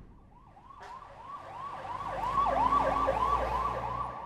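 A siren wailing in quick rising-and-falling sweeps, about four a second. It grows louder over the first two seconds and then holds steady.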